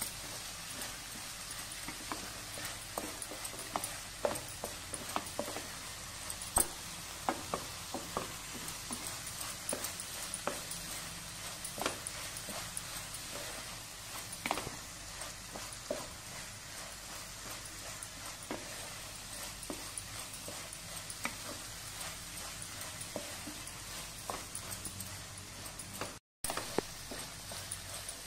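Onion, tomato and spice masala frying in a nonstick pan: a steady sizzle, broken by scattered taps and scrapes of a wooden spatula stirring it.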